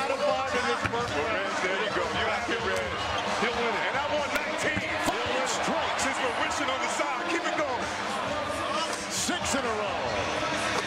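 Basketballs thudding and clanging in quick succession as they are shot from the racks and bounce off the rim and hardwood floor, over a steady din of many overlapping voices from an arena crowd.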